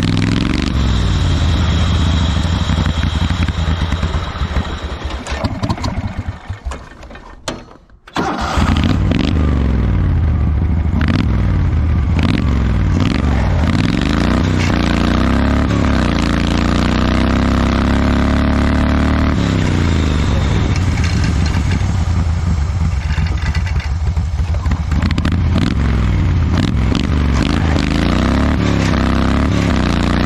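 Wheel Horse garden tractor engine running hard, its pitch rising and falling with throttle and load. About six seconds in it dies away almost to nothing, then comes back suddenly and keeps running steadily.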